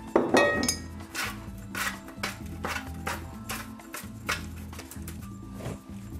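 Background music with a steady beat, with a few light clinks of kitchenware as a baking tray is handled.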